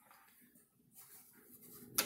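An interior pantry door being swung shut: faint rustling, then its latch clicks closed once at the very end.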